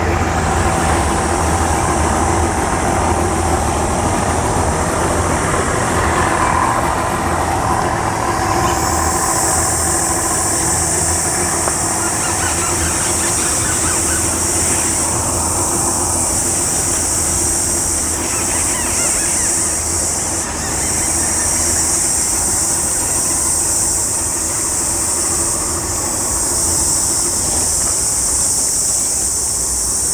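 Boat outboard motors running at idle as boats move slowly past, a low engine hum that is strongest in the first several seconds. Under it a steady high-pitched hiss that grows louder about nine seconds in and holds.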